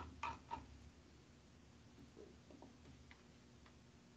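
Near silence with a few light clicks from computer use at a desk: two louder ones in the first half-second, then fainter scattered ones.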